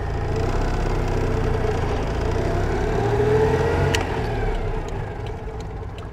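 1981 Citroën 2CV's small air-cooled flat-twin engine heard from inside the cabin, pulling the car away, its note rising for about four seconds. There is a click about four seconds in, and then the engine note falls and quietens.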